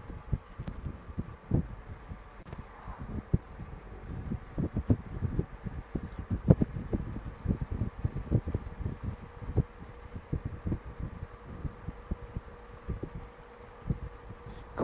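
Wind buffeting the microphone of a moving motorcycle trike, irregular low gusts and thumps, with a faint steady hum underneath.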